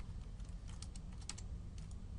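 Typing on a computer keyboard: irregular key clicks in short runs, over a low steady hum.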